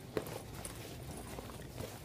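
Faint handling noise as a fabric bag is opened and the item inside is pulled out: light rustling, with a soft knock just after the start and another near the end.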